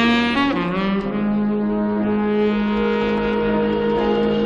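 Tenor saxophone playing a slow jazz ballad. It bends into a note near the start, then holds one long low note over soft sustained backing.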